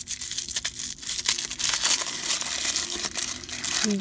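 A small crumpled printed wrapper being unfolded by hand, crinkling and crackling continuously in quick, sharp little clicks.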